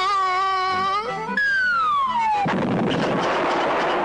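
Cartoon sound effects: a held note, then a whistle falling steadily in pitch for about a second, then a long crash as the tree comes down on the bear.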